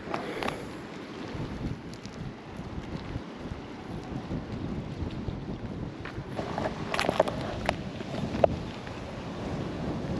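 Wind buffeting the microphone in a steady low rumble, with a few short light knocks of handling between about seven and eight and a half seconds in.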